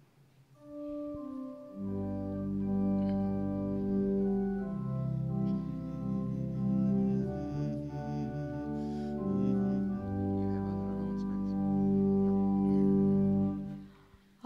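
A keyboard instrument plays an instrumental introduction to a song in slow, held chords. It starts about half a second in, a lower bass part joins about two seconds in, and it stops just before the singing begins.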